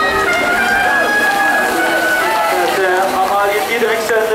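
Race announcer's excited voice over the finish-line public-address loudspeakers, with music playing underneath.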